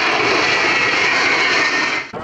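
Ilyushin Il-76 water bomber's four turbofan engines passing low overhead: a steady, loud rush of jet noise with a high whine running through it.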